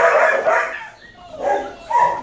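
Dog barking loudly in a shelter kennel: a long bark at the start, then a shorter one about a second and a half in.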